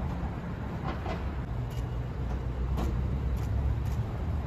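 Steady low rumble of city street traffic, with a few faint, irregular clicks over it.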